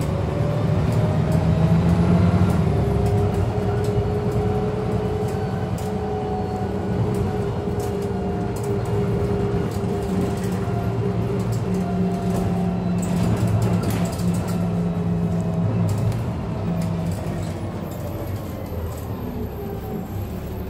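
A double-decker bus on the move, heard from inside the lower deck: a steady engine drone with a drivetrain whine that rises as the bus gathers speed, holds steady, then falls away near the end as it slows.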